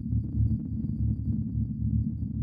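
A deep, muffled pulse repeating about twice a second, with nothing higher above it: a low, heartbeat-like beat in an electronic music track.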